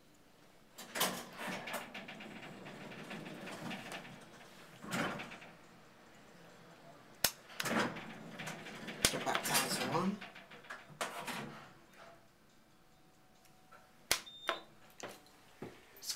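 Sounds inside an old Westinghouse elevator car: button presses and sharp mechanical clicks, with intermittent door and machinery noise. A short high beep sounds near the end.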